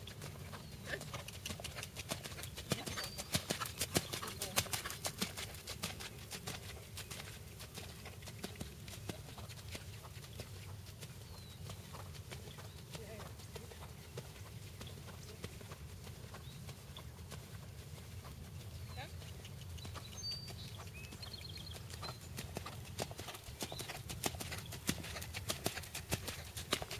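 Hoofbeats of a horse moving under a rider on sand arena footing. They are loudest and most distinct in the first few seconds, while the horse is nearest, and fainter for the rest.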